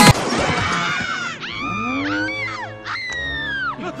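Loud music breaks off at the start. Then come cartoon vocal effects: long sliding, wavering cries and a high squeal that falls in pitch near the end.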